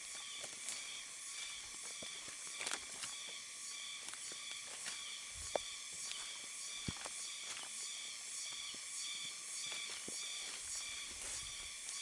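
Tropical forest insect chorus, a steady high buzzing that pulses a few times a second, with scattered light clicks and snaps of footsteps on the forest floor.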